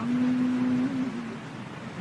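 A chanting voice holds the last syllable of a verse line on one steady note for about a second, then lets it sag slightly and fade, leaving a steady hiss.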